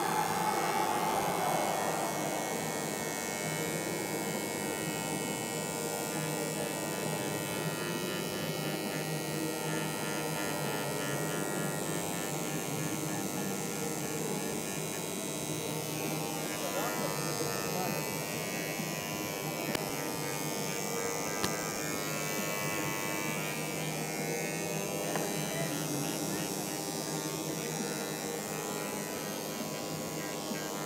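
Handheld mains-powered vibrating engraver buzzing steadily as its tip etches into an acrylic sheet; the tip is driven straight from the 50 Hz mains, so moving it too fast makes the line skip.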